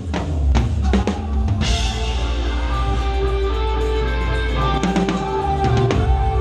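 Live rock band with a drum kit: after a short break, several hard drum hits land in the first second and a half, then the full band plays on with bass, guitar and drums.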